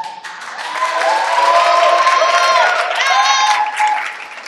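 Audience clapping, with voices calling out and cheering over the applause; it swells about half a second in and dies down near the end.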